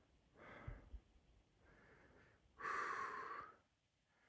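A person breathing out: a faint breath about half a second in, then a longer, louder exhale near the three-second mark lasting about a second.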